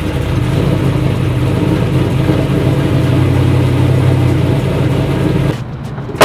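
LS-swapped V8 engine of a 1987 Chevy K5 Blazer running steadily just after being brought to life in the new build, until the sound drops away shortly before the end.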